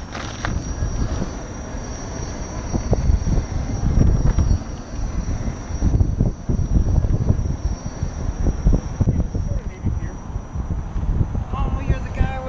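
Low, uneven rumble of wind buffeting a camera mounted low on a Gotway electric unicycle, mixed with its tyre rolling over the path. A thin steady high tone runs underneath.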